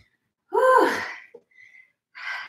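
A woman's voiced, breathy gasp of about half a second, starting about half a second in, from the strain of doing push-ups; she is out of breath.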